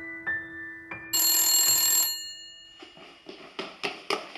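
A few soft piano notes fade, then an old desk telephone's bell rings for about a second, the loudest sound here. A run of quick light knocks and taps follows.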